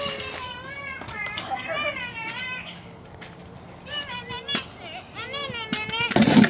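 Children playing: a child's high, wavering wordless voice in several short stretches, with scattered sharp clicks and knocks from kick scooters on a concrete driveway.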